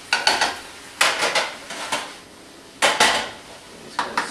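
A cooking utensil knocking and scraping against a pan while browned ground meat is worked, in three short clusters of sharp clatter.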